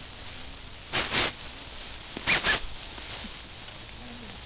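Gundog training whistle blown twice, each time as a quick double pip, about a second and a half apart, over a steady high hiss. These are whistle commands to the spaniel.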